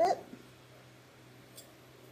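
The end of a spoken word, then quiet room tone with a faint steady hum and one small tick about one and a half seconds in.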